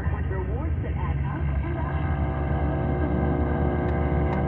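Broadcast audio playing inside a moving car: a voice for about the first two seconds, then steady held tones, over the car's low road and engine rumble.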